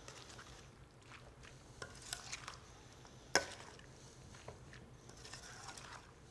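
A metal spoon stirring wet, diced ceviche in a stainless steel mixing bowl, quiet, with scattered light clinks of spoon on bowl and one sharper clink just past halfway.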